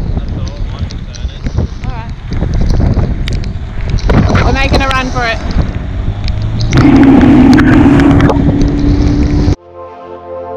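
Heavy wind buffeting the microphone on a small tender running through a rain squall, with a voice calling out about halfway through. The sound cuts off suddenly near the end and music takes over.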